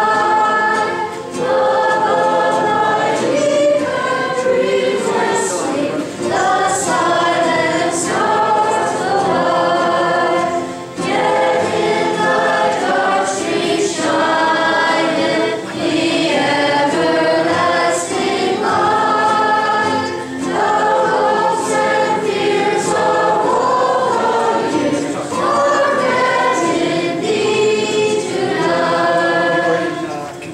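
A small group of young girls singing a Christmas carol to the accompaniment of two acoustic guitars. The singing comes in phrases of about five seconds with short breaks between.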